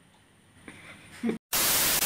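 Faint room tone, then a brief dead gap and a sudden loud burst of TV static hiss about one and a half seconds in: a glitch sound effect used as an edit transition.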